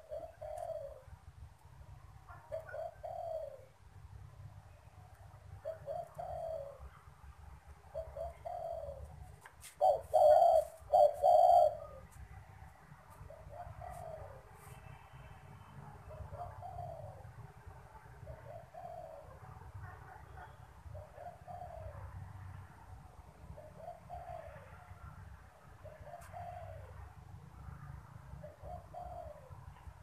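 Spotted dove cooing over and over, short low coos every second or two, with a much louder run of three coos near the middle.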